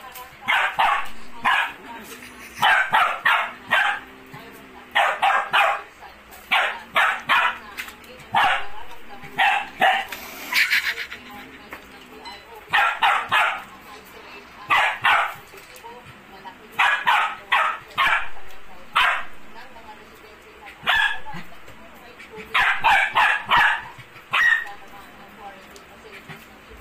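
Small dog barking in play, quick clusters of two to four high, sharp barks about every two seconds, with one longer burst about ten seconds in.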